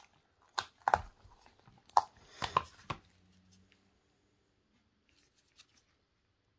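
Cured resin pendants being popped out of a flexible silicone mould by gloved fingers: about five short sharp crackling and peeling sounds in the first three seconds as the silicone lets go of the resin.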